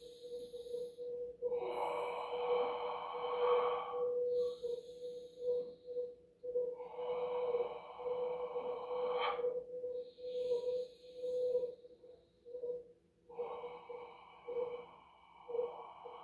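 A man breathing deeply in a slow rhythm for a chi-building breathing exercise: three long, forceful exhales through pursed lips, each two to three seconds, alternating with shorter hissing inhales. A steady faint tone runs underneath throughout.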